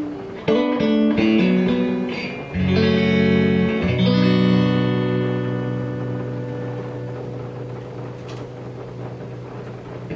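A clean electric guitar through a Tone King Imperial tube amp: a few quick single notes, then two chords about a second and a half apart, the second left to ring and slowly fade out.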